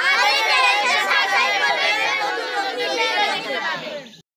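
A group of children calling out together, many voices overlapping at once, loud and unbroken, cutting off just at the end.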